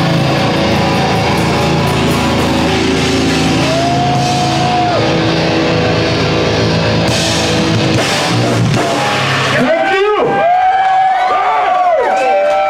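Goregrind band playing live: distorted electric guitars, bass and drums at full volume. The song ends suddenly a couple of seconds before the end, and voices shouting and cheering follow.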